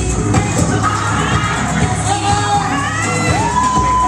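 Music with singing plays loudly over a steady beat while a crowd cheers and children shout. Near the end a voice holds one long high note.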